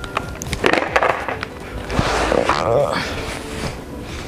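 KYT full-face motorcycle helmet being taken off: a few sharp clicks as the chin strap is undone near the start, then irregular scraping and rustling of the shell and padding against head and hair as it is pulled off.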